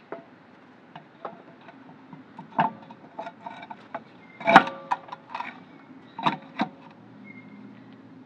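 Steel spare wheel knocking and scraping against the hub and wheel studs as it is worked by hand into line with the stud holes: a handful of scattered clunks, the loudest about four and a half seconds in.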